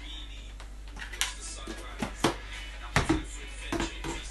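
Several short, sharp knocks and clicks of kitchen containers and utensils being handled and set down beside a stovetop pot, about six in all, the loudest around three seconds in, over a low steady hum.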